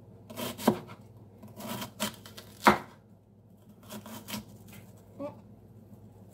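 Kitchen knife slicing through an onion onto a cutting board: a handful of separate, irregularly spaced cuts, the loudest a little under three seconds in.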